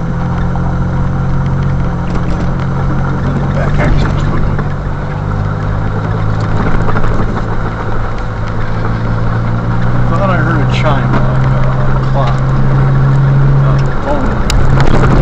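A car's engine running at a steady cruise with a low, steady drone, mixed with tyre noise on a gravel road, heard from inside the cabin while driving.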